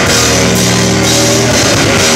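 A heavy hardcore/sludge metal band playing live at full volume: distorted guitar chords held over the drum kit and cymbals, with a chord change about one and a half seconds in.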